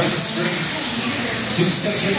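Indistinct talking over a steady high hiss.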